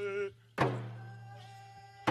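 Traditional hand drum song: a frame hand drum struck once about half a second in, its beat ringing and fading, with a singer's held note sliding down and ending just before it and a faint sustained note after. The next drum beat lands right at the end, the beats coming slowly, about one every second and a half.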